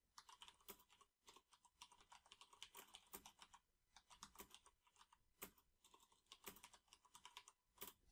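Faint typing on a computer keyboard: a quick run of keystrokes with a brief pause a little before halfway.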